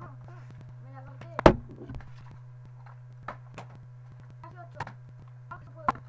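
A plastic soda bottle hitting a hard floor with one loud thud about one and a half seconds in, followed by a few lighter knocks and taps.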